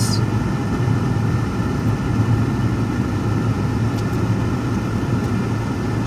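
Steady engine and road noise of a car driving along, heard from inside the cabin: an even low rumble with no breaks.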